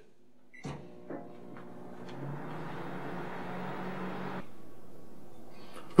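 Sylvania countertop microwave oven: a short keypad beep as the popcorn button is pressed, then the oven runs with a steady hum and fan noise. The sound builds over the first couple of seconds and cuts off suddenly about four and a half seconds in.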